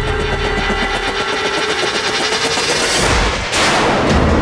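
Suspense background score: a fast, even rattle of clicks over a held drone, then a rising whoosh about three seconds in.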